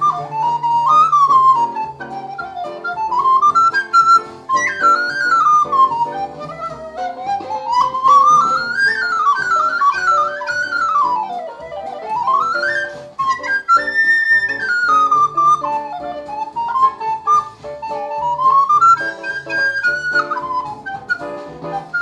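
Wooden recorder playing a fast jazz solo, its running lines climbing and falling quickly, over ukulele chords underneath.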